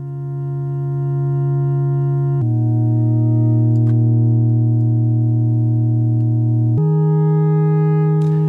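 Sustained synthesizer drone chords from a Bitwig Poly Grid patch, built from voice-stacked partials. The chord notes are chosen by a Markov-chain probability sequencer. The sound swells in over the first second and moves to a new chord twice, about two and a half seconds in and again near the end.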